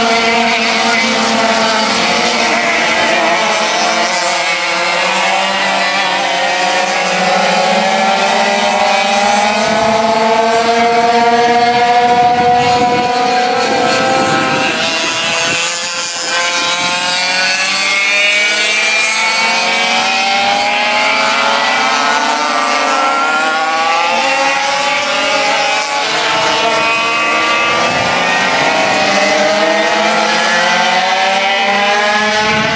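Several classic 100cc two-stroke kart engines racing together, their notes rising and falling as the karts accelerate and back off through the corners.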